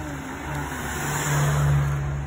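A car engine with road noise, a low steady hum that grows louder to a peak late on and then eases off, like a car going by.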